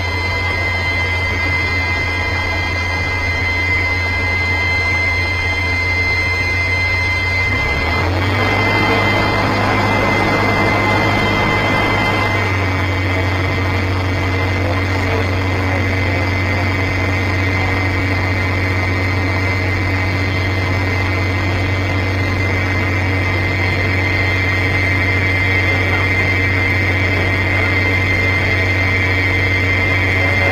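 Cockpit sound of a CAP 10B's four-cylinder Lycoming piston engine and propeller running while the plane rolls on the ground. The steady drone changes note about eight seconds in and again about twelve seconds in as the power is adjusted.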